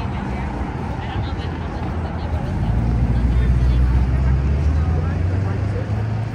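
A motor vehicle drives past close by, its low engine rumble building about halfway through, then easing near the end. Passers-by are talking underneath it.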